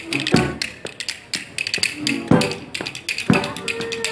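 Acoustic street string band playing upbeat old-time jazz: banjo, acoustic guitar and upright bass, with a steady run of sharp percussive taps over the beat.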